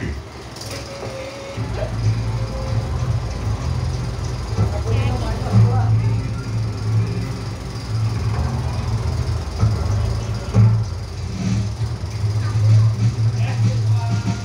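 A film soundtrack played over large outdoor loudspeakers: heavy low bass that swells and breaks off, under music and some voices.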